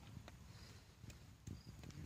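Near silence: faint outdoor ambience with a low rumble and a few soft clicks, the clearest about one and a half seconds in.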